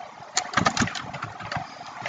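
Computer keyboard keys clicking in a quick run of keystrokes as a short word is typed.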